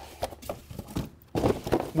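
Handling noise from unboxing the cordless drywall sander: a series of irregular light knocks and clicks, with a brief scrape or rustle about a second and a half in.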